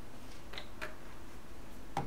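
A few light clicks and taps as the glass olive oil bottle is handled and moved away after pouring, over a steady low hum.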